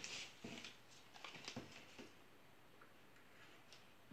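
Faint rustles and light taps of paper and card being handled on a table as a taped paper layer is lined up and pressed onto a card, mostly in the first two seconds, with one more small tap near the end.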